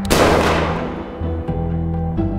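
A single pistol shot just after the start, its echo dying away over about half a second, over steady low music.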